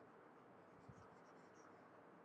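Near silence: faint room hiss, with a soft low bump about a second in and a few faint light taps.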